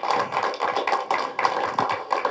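Audience applauding: many hands clapping at once in an irregular run.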